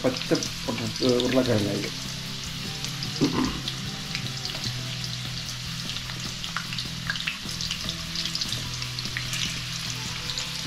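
Small whole potatoes frying in oil in a wok: a steady sizzle with scattered small crackles and pops throughout.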